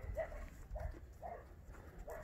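Faint, irregular hoof steps of young cattle walking over frozen, snow-dusted ground, over a low rumble of wind on the microphone.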